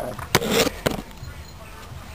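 Two sharp knocks, the first followed by a brief rustle, as the camera is set down on the concrete floor, then only faint steady background noise; the small two-stroke engine is not running.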